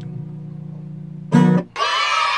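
Acoustic guitar chord left ringing and slowly fading, then one short loud strum about a second and a half in, cut off sharply as the song ends. Excited high-pitched squealing from listeners starts right at the end.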